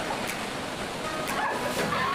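Waterfall pouring into a rocky plunge pool, a steady rush of water, with short calls from people in the water over it.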